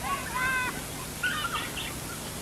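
Birds chirping on a film soundtrack played back in a hall: two short groups of arched calls about a second apart.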